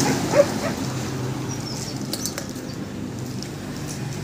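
A plastic bag rustling and crinkling as a puppy tugs and noses at it, with a brief sharp chirp about half a second in.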